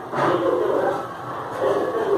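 People's voices talking, the words unclear.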